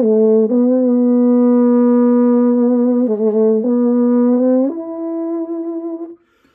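Trombone played through a Jo-Ral aluminum bucket mute in a slow phrase of long held notes, with the last note higher and softer. The muted tone comes fairly close to the classic bucket-mute sound.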